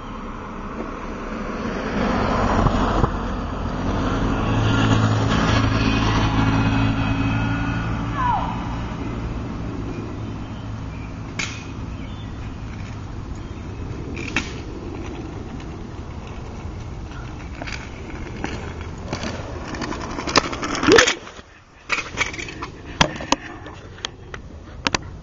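A car driving past on the street, its engine hum building over a few seconds and then fading away. Scattered sharp clicks and knocks follow, most of them near the end.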